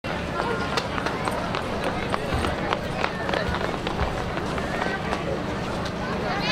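Quick footsteps and taps on stone paving as children run into position, with people's voices around.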